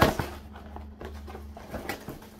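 A large cardboard frozen-pizza box set down on a table with a sharp thump at the start, then quieter handling of the box and another short knock near the end.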